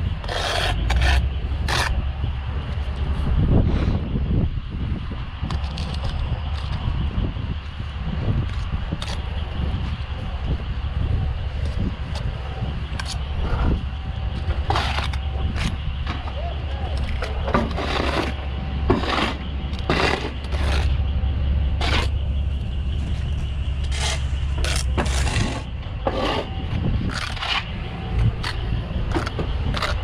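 Steel brick trowel working mortar and bricks as a course is laid: irregular sharp clicks and scrapes of steel on brick and mortar as mortar is cut off and bricks are tapped down. A steady low rumble runs underneath.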